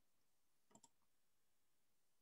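Near silence, with two faint clicks in quick succession just under a second in.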